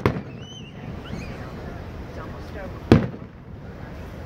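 Aerial firework shells bursting overhead: a loud boom right at the start and another about three seconds in.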